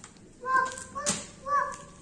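A young girl's voice making three short, high, even-pitched calls about half a second apart, a child's imitation of a dog barking, with a sharp click in the middle.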